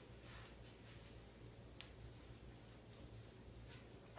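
Near silence: faint soft rustling of damp hair being scrunched in the hands, with one small sharp click just under two seconds in, over a low steady room hum.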